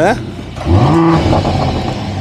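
Mercedes-AMG GLE 53 Coupé's turbocharged inline-six revved once while stationary, heard at the tailpipes: the engine note rises a little under a second in, holds briefly, and falls back to idle.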